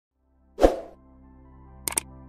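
Intro sound effects: a single deep plop about half a second in, then a soft steady music tone, and two quick clicks near the end as a cursor clicks a subscribe button in the animation.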